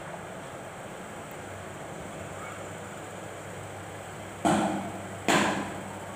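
Steady low room hum, then two short, loud noisy bursts about four and a half and five and a half seconds in, each fading quickly.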